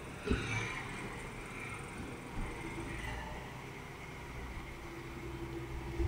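A sedan's engine running at low speed while the car reverses slowly, a faint steady hum, with one short knock about a third of a second in.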